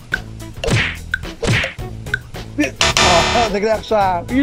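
Comedy sound effects laid over background music with a steady beat: two quick falling swooshes about a second apart, then a loud, dense burst near the end mixed with a voice.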